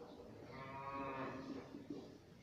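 A cow mooing: one long, steady call about a second long.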